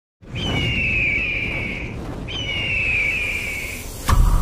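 Intro sound effect of a bird of prey screaming: two long, slightly falling screeches about two seconds apart, over a low rumble.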